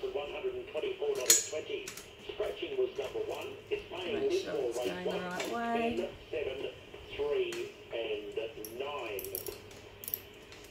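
Small metallic clinks and clicks of a spanner and ratchet on the cart handle's bolt, with one sharp click about a second in, over indistinct talk from a radio.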